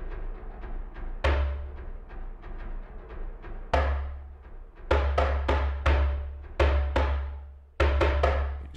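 Sequenced percussion pattern from the AURORROR Kontakt instrument, layering a death-drum impact, djembe and toy glockenspiel samples. A steady fast pulse of small hits runs throughout, and deep drum hits come in about a second in, recurring roughly every second or so with long decaying tails.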